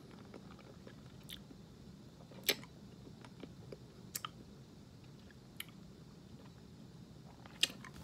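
A lemon hard candy being sucked in the mouth: about half a dozen faint, sharp clicks as the candy knocks against the teeth, scattered among soft mouth sounds over a low steady room hum.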